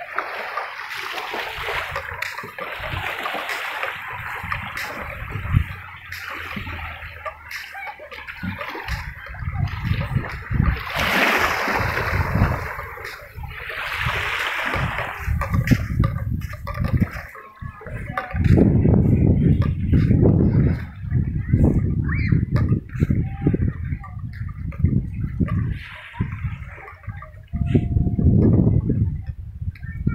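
Small waves lapping and washing up on a sandy shore, a steady wash of water. In the second half a louder low rumbling noise on the microphone comes and goes in bursts.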